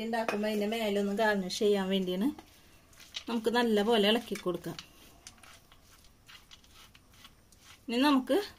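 Talking for much of the first half, then faint scrapes and light taps of a wooden spatula stirring a sliced banana mixture in a nonstick frying pan.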